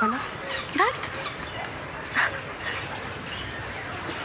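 A woman's soft sounds without words: a quick rising "hm" about a second in and a short breathy laugh about two seconds in, over a steady high hiss.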